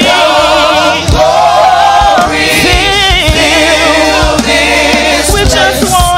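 Live gospel music: a praise team of several singers on microphones singing sustained notes with vibrato, with low drum hits repeating underneath.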